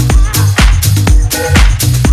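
House music from a deep house DJ mix: a steady four-on-the-floor kick drum about twice a second over a bassline, with hi-hats between the beats.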